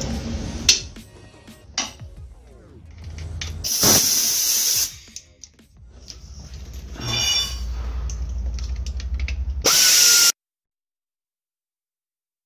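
A handheld power tool runs in short bursts, loosening the valve body bolts of a 46RE automatic transmission, with two loud bursts of hiss about four and ten seconds in. The sound cuts off abruptly about ten seconds in.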